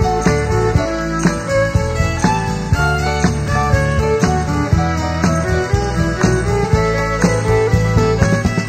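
Country band playing an instrumental break: guitar picking a melody over bass and a steady beat of about two strokes a second.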